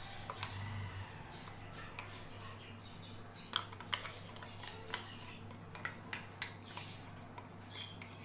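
A metal spoon scraping and tapping against the inside of a stainless-steel mixer-grinder jar while scooping out thick ground chutney: a scatter of small, sharp clicks at irregular intervals over a low steady hum.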